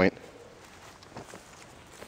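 Faint outdoor quiet after the last word of speech, with a couple of soft footsteps a little over a second in as a person steps into place.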